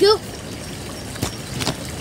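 Pond water splashing and trickling from a pond net as it is lifted out with a clump of frogspawn, over a steady rush of wind on the microphone, with two short knocks a little after a second in.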